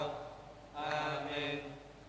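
A group of men reciting a prayer text aloud together in unison in Vietnamese, the Catholic Profession of Faith: a phrase ending at the start, a short pause, then one more phrase in the middle.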